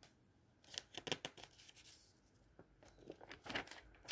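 Glossy paper advertising flyers being handled and a page turned: two short clusters of crisp paper crinkling and rustling, about a second in and again near the end.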